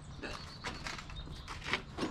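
A handful of short clicks and rustles of goods being picked up and handled at a sale table, about five spread across two seconds.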